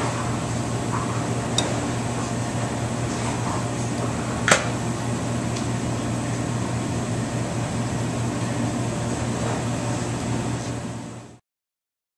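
Steady low mechanical hum of kitchen equipment, with a single sharp click about four and a half seconds in. The hum fades and cuts off shortly before the end.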